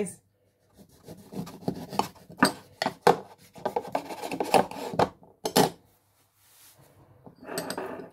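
A knife sawing through a lemon on a plate: a run of uneven scraping strokes with sharp knocks against the plate, the loudest knock at about five and a half seconds.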